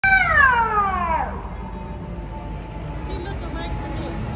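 Fire engine siren sliding down in pitch and dying away over the first second and a half, then a low rumble of street traffic.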